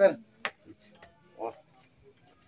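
Crickets chirring in a steady, high-pitched night chorus. The end of a voice comes right at the start, and there is a sharp click about half a second in.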